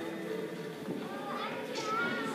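Many young children talking and calling out over one another, with a higher child's voice rising near the end.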